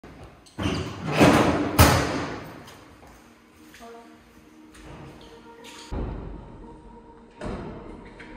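Edited intro sound design: a loud noisy swell with a sharp hit near the middle of it, then two deep booms later on, over a quiet sustained music drone.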